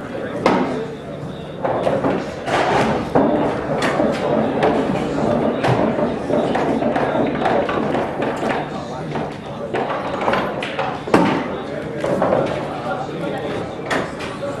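Indistinct background chatter in a large hall, broken by several sharp knocks and thuds, the loudest about eleven seconds in.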